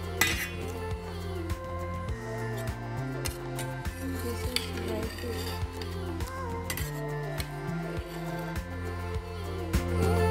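Background music with a steady beat, over a steel serving spoon clinking and scraping against a steel bowl and metal plate as curry is scooped out, with one bright ringing clink just at the start.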